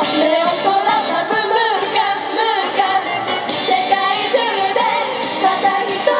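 Women singing a pop song live into handheld microphones over loud, steady-beat pop music.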